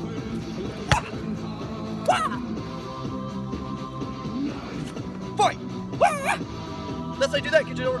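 A dog yipping in short high yelps several times over steady background music, with one sharp knock about a second in.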